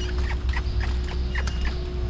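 Dairy barn ambience: a steady low hum with a faint steady tone, scattered short high chirps, and soft irregular steps in wet manure as a Holstein cow is walked along the alley.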